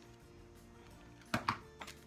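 Two sharp clicks a fraction of a second apart, about a second and a half in, with a smaller one just after, from the cutting tool as the last of the 20-gauge vinyl is cut. Soft background music plays throughout.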